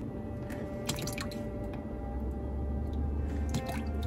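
A few soft, scattered clicks and small liquid sounds as sodium lactate is poured from a plastic bottle into a measuring spoon and stirred into melted soap oils.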